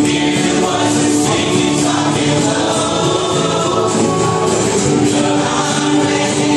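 Live bluegrass gospel band playing: strummed acoustic guitars and upright bass under long held notes of a sung melody line.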